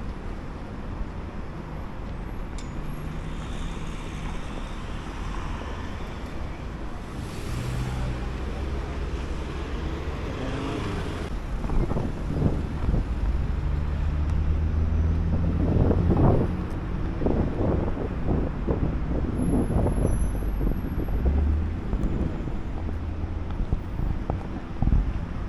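Road traffic: cars driving past with a steady engine and tyre rumble. It gets louder in the second half, with a few brief louder sounds near the end.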